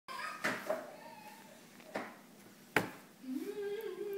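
A few sharp knocks against a wooden table, the third the loudest, then from about three seconds in a child's low, drawn-out moan that rises slightly and then holds steady.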